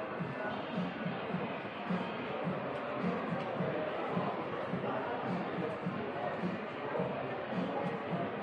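Steady hubbub of many people talking at once in an indoor hall, with no single voice standing out.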